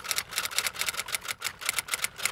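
A rapid, even run of sharp mechanical clicks, about six a second, added as a sound effect under a title card.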